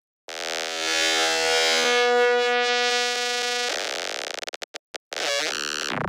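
An audio loop played through the Silo granular synthesizer plugin: a dense, held chord-like smear of stretched grains. After about four seconds it breaks into choppy stuttering with brief dropouts, then a rapid buzzy stutter as the grain size is turned down to a few tens of milliseconds.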